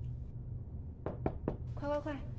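Three quick knocks on a wooden interior door, about a quarter second apart, followed by a child's voice calling out.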